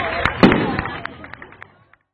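Firecrackers popping in quick succession, about four sharp pops a second, with one louder bang about half a second in, over the voices of a crowd. The sound fades out near the end.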